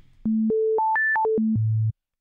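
A pure sine tone from Serum's oscillator, shifted one octave at a time by its Octave control: it steps up three octaves, then back down four, ending an octave below where it began, with a faint click at each change.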